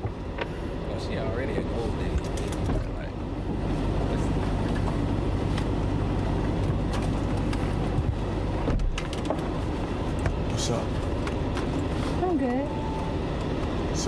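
A steady rush of car cabin noise: a Lamborghini Urus running, with its air conditioning blowing hard and a low hum underneath. The sound drops out briefly about nine seconds in, and a faint voice comes in near the end.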